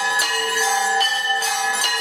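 Temple bells rung for arti, struck repeatedly about twice a second, each ring carrying on into the next.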